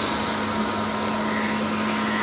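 Steady hum and hiss of an EMU electric local train standing at the platform, with a faint high whine through the middle.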